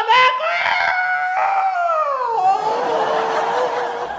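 A man's voice in a long, drawn-out cry whose pitch slides down partway through, turning rough and breathy in the second half.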